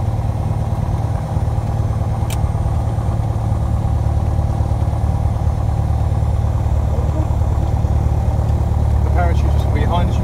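Piper Warrior's four-cylinder Lycoming engine and propeller running steadily, a deep drone heard from inside the cabin. A single sharp click sounds about two seconds in.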